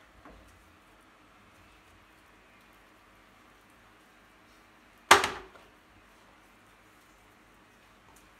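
Quiet room tone broken by one sharp, loud knock a little past halfway, which dies away within half a second.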